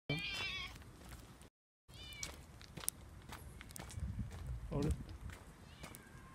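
A black cat meowing twice: a short high-pitched meow at the start and a shorter one about two seconds in.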